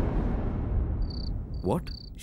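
The low rumbling tail of a dramatic hit sound effect fades away. About a second in, three short high-pitched chirps sound in quick succession.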